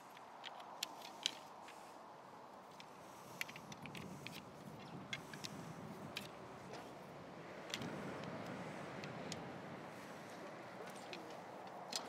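Faint, scattered light clicks and ticks of tent poles being handled and fed into the tent, with a soft rustle of tent fabric partway through, over quiet outdoor ambience.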